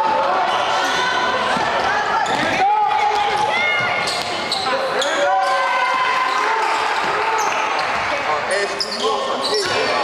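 A basketball being dribbled on a hardwood gym floor, with sneakers squeaking in short chirps as players cut, under indistinct shouting from players and spectators in a large, echoing gym.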